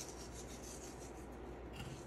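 Salt sprinkled by hand over a raw beef tenderloin on a wooden cutting board: faint scattered ticks of falling grains over a low steady hum.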